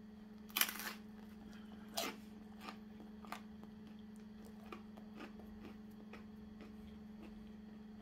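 Crisp, flaky pizza crust being bitten off and chewed: a sharp crunch about half a second in, another at about two seconds, then fainter chewing crunches. A steady low hum runs underneath.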